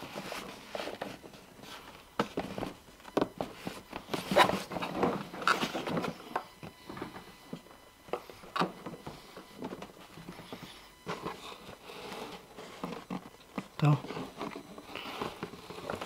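Cardboard advent calendar being handled and turned in the hands: irregular rustling and scraping of the card, with scattered light taps and clicks. Near the end a fingertip works at the perforated edge of one of its doors.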